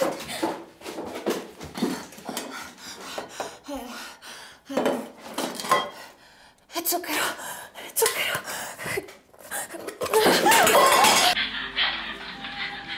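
Metal tins and canisters clinking and clattering as they are handled and a lid is worked open, in irregular bursts that get louder and denser near the end, then cut off suddenly.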